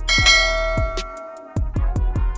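A bright notification-bell chime sound effect strikes at the start and fades over about a second and a half, over background music with a steady beat.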